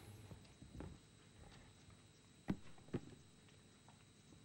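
Footsteps on a hard floor in a quiet hall: faint steps, then two sharper steps about half a second apart past the middle.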